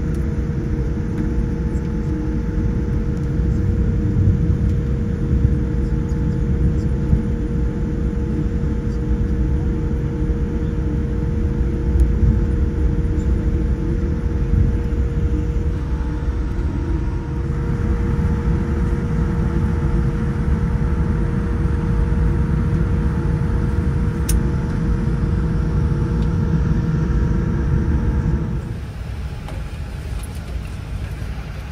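Steady low rumble inside a Boeing 787 cabin as the airliner taxis, with a steady hum running through it. Near the end the rumble drops to a noticeably quieter level.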